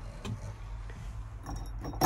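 A bunch of keys on a ring jangling in the ignition switch of a road roller's dashboard as a hand takes hold of the key, starting faintly and growing louder near the end.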